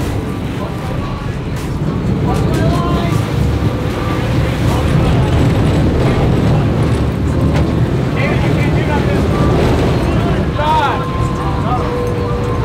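Sportfishing boat's engines running with water churning and rushing past the stern, a loud steady rumble, with brief shouts from the crew near the end.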